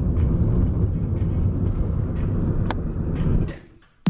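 Car interior road and engine noise while driving, a steady low rumble that fades out about three and a half seconds in.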